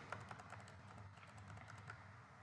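Faint, irregular clicking from computer input devices, many small clicks one after another over quiet room tone.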